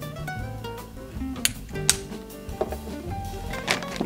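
Background music: a light tune of plucked-string notes.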